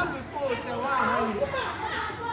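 Speech only: a person talking, no other sound standing out.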